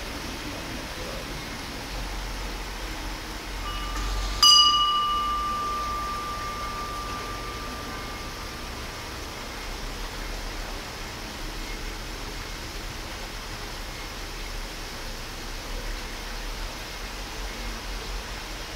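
A single ring of a dressage judge's bell about four seconds in, a clear tone that fades away over several seconds: the signal for the rider to begin the test. A steady low background noise runs underneath.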